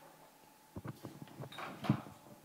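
A quick run of knocks and clicks with a brief scrape, starting about a second in and loudest just before the end: objects being handled near the microphone.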